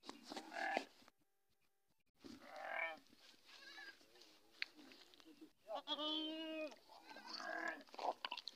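Sheep in a flock bleating, about four separate calls with a short silent gap after the first.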